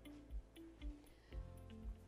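Quiet background music with a soft, steady beat of about two beats a second under short melody notes.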